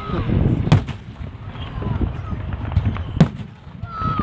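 Aerial fireworks shells bursting: two sharp bangs, one about a second in and another a little past three seconds.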